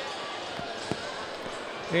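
Steady stadium background noise from the crowd and venue during a race, with one sharp knock about a second in.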